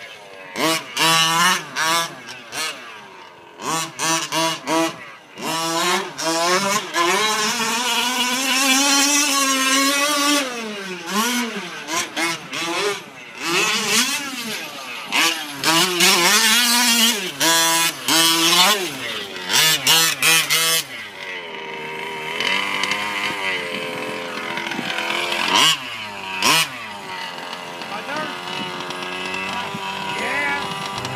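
Small two-stroke gas engine of a 1/5-scale RC short course truck, revving up and down over and over as it is driven hard, its pitch rising and falling every second or two. In the last third it runs steadier and somewhat quieter.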